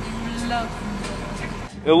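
Steady low hum of a vehicle engine idling, heard inside the truck cab, with a brief murmur of a voice about half a second in. The hum cuts off suddenly near the end as a man starts talking.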